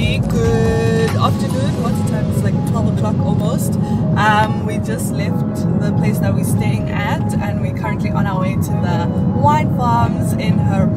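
Steady road and engine noise inside a moving car's cabin, with voices and music over it.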